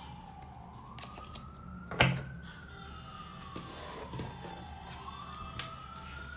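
A siren wailing, its pitch slowly rising and falling in one long sweep after another, with a sharp click about two seconds in.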